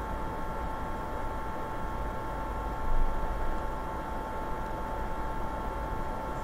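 Steady background hum and hiss of the recording, with a constant thin whine, and a brief soft swell about three seconds in.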